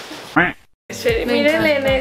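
Edited-in comic audio: a short rising vocal yelp, a sudden cut to silence, then a sustained pitched sound with a wavering, quacking quality over a regular low beat.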